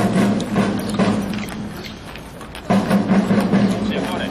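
Horses' hooves clopping on asphalt as several horses walk past, a dense, uneven patter of overlapping clicks that eases off around the middle and picks up again just before three seconds.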